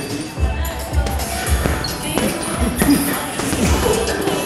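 A series of gloved punches thudding into a heavy punching bag at an irregular pace, with music playing in the background.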